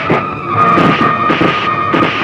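About five quick swishes of wooden fighting sticks being swung in a staged stick fight, over held tones of background film music.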